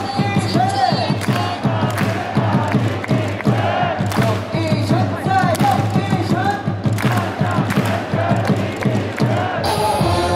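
Baseball batter's cheer song playing over the stadium speakers to a steady drum beat, with the crowd chanting along. Near the end the music changes to long held notes.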